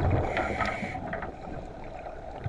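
Scuba diver's exhaled bubbles from a regulator heard underwater: a bubbling, gurgling rush that is loudest in the first second and then fades, with scattered small clicks.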